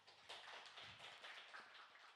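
Faint rustling and light tapping of paper sheets being handled close to a microphone.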